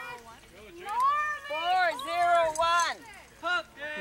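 A person's raised voice calling out in a few drawn-out phrases, the words unclear, mostly between about one and three seconds in, with a shorter call near the end.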